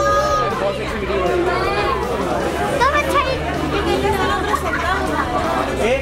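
Overlapping chatter of several voices, high-pitched children's voices among them, over a low steady hum.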